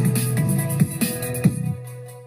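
TV news intro music: an electronic theme with drum hits under a held chord, ending on a long low note that fades out near the end.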